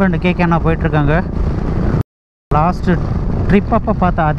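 A man's voice close to the microphone over the steady low rumble and wind noise of a motorcycle on the move; all sound cuts out completely for about half a second midway.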